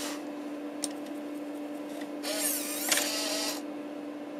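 Apple MF355F 3.5-inch floppy drive ejecting a disk: over a steady hum, its eject mechanism whirs for about a second and a half, starting about two seconds in, as the disk is pushed out of the slot.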